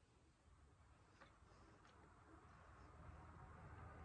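Near silence with faint mouth sounds of chewing a soft cookie: two small clicks a little over a second in, and a low noise that slowly grows toward the end.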